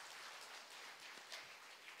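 Faint applause from a congregation, an even patter of many hands clapping.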